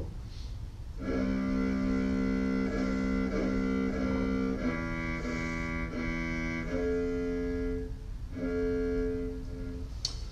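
Eigenharp Pico controller playing a physical-model cello sound, its notes shaped by breath control. A few long held notes start about a second in, change pitch around the fifth and seventh seconds, and break off briefly near the eighth second before a last held note.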